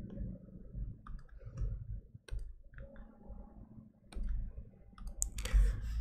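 A few light, scattered clicks and taps over a faint low hum.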